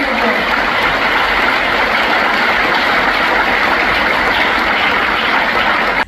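Audience applauding, a steady, dense clapping.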